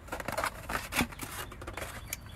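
A styrofoam egg carton being handled and opened, the foam creaking and scraping in a run of short crackles, the loudest about a second in.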